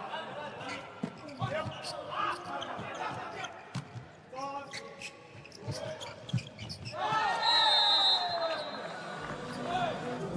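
A volleyball rally in a large hall: sharp ball hits off hands and floor, with players calling out. About seven seconds in comes the loudest part, a burst of shouting with a short high referee's whistle over it as the rally ends.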